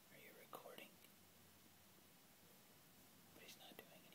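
Near silence broken by two brief, faint whispered utterances, one near the start and one near the end.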